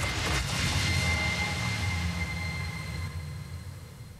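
Low, steady rumbling drone from the tail of a TV talent-show opening music sting, fading slowly away, with a faint high held tone over the first part.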